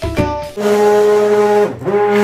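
Hand-held immersion blender running in a pot of liquid soap: a loud, steady motor hum that starts about half a second in, sags briefly and picks up again near the end. A few piano notes of background music come just before it starts.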